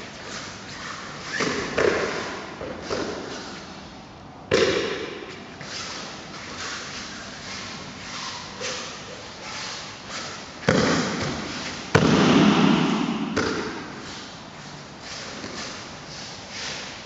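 Aikido breakfalls on foam puzzle mats: several heavy thuds of bodies and slapping hands landing, the loudest about four and a half, ten and a half and twelve seconds in, each dying away in the hall. Between them comes the fainter scuff of bare feet moving on the mats.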